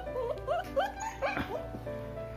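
A long-coat German Shepherd puppy whimpering in a quick run of about six short rising yelps while held up in the air, protesting at being lifted. Soft background music plays underneath.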